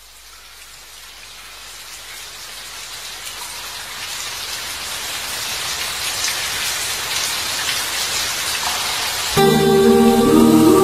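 Rain-like hiss of falling rain fading in and growing steadily louder as the song's opening effect. Near the end the song's intro music comes in suddenly with sustained chords.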